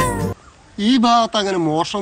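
A held sung note from a film song cuts off abruptly about a third of a second in. After a short gap, wavering, pitched vocal sounds follow in two short runs.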